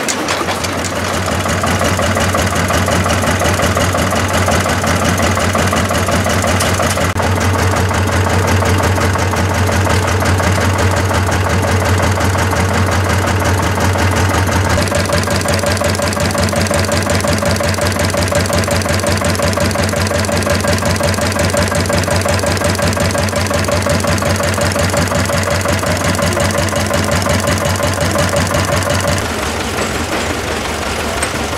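Vintage stationary engines running steadily, each with a fast, even mechanical knocking beat and valve-gear clatter. The sound changes character about 7 and 15 seconds in, and again just before the end, as one engine gives way to another.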